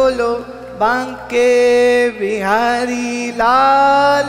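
A woman's voice singing a devotional Krishna chant in long, held phrases that rise and fall, with short breaks between them, over a steady low hum.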